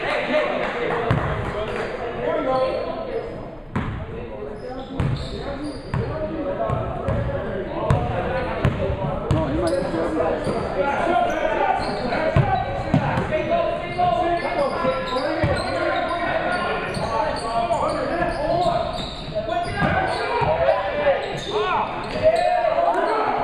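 A basketball bouncing with short thuds on a hardwood gym floor during play, under steady echoing chatter of players and spectators in a large gymnasium. Sneakers squeak near the end.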